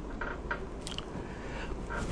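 Quiet studio room tone: a low steady hum with a few faint soft clicks.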